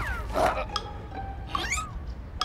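Wordless cartoon character vocal sounds: a short squeal at the start, a brief louder grunt about half a second in, and a rising, wavering cry about a second and a half in, over light background music with short ringing notes.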